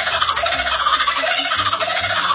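Laughing kookaburra's call played back at double speed, turning it into a dense, rapid, high-pitched chatter like the cartoon dolphin sound effect.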